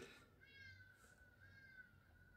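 Near silence, with a faint, thin, high wavering tone in the background and a brief faint animal call about half a second in.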